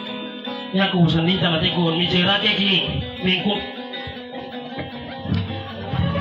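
A man's voice singing a dayunday verse, a Visayan sung exchange, over strummed acoustic guitars; the voice drops away about three seconds in, leaving mostly the guitars.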